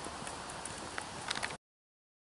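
Footsteps on a path over a steady background hiss, with a few sharper steps about a second in. The sound cuts off abruptly at about one and a half seconds.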